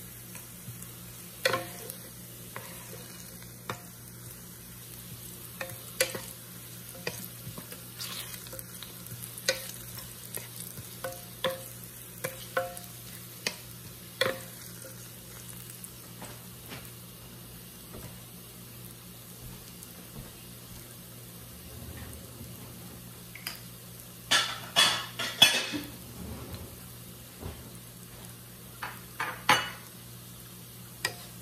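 Onion rings sizzling in oil as they brown in a slow cooker pot, stirred with a wooden spatula that clicks and scrapes against the pot now and then. About three-quarters of the way through comes a short cluster of louder knocks and scrapes.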